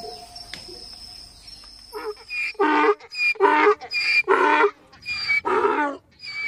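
Zebra calling: a run of short, barking calls, about two a second, starting about two seconds in.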